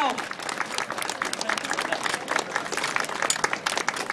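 An outdoor audience applauding, a dense patter of many people clapping.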